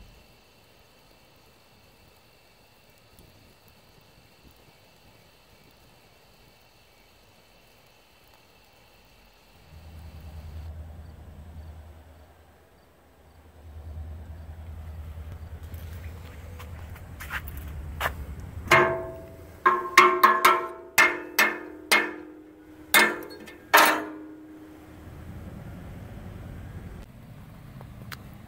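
Metal struck about ten times in quick, uneven succession, each a sharp clank with a short ringing tone. Before the clanks there is a faint steady high drone, then a low rumble.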